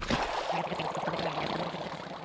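Water sloshing and washing in an animated film's sound effects, an even, steady noise.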